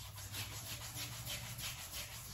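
Palms rubbing pre-shave cream into two-to-three-day facial stubble: a scratchy rasp in quick repeated strokes.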